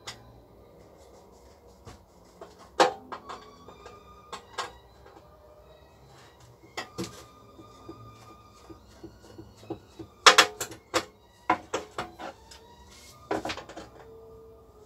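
A screwdriver working the screws of the Tramag D2001 transformer's case: scattered clicks and knocks with brief squeaks. The sharpest knocks come about three seconds in and again around ten seconds, where several follow in quick succession.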